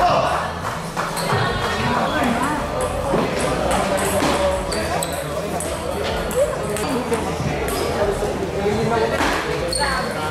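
Table tennis play: a ping-pong ball clicking off paddles and the table in quick rallies, over a steady background of people talking.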